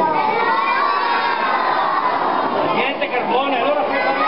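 A large crowd of young children shouting and cheering together, many voices drawn out at once for the first couple of seconds, with a brief lull about three seconds in before more shouting.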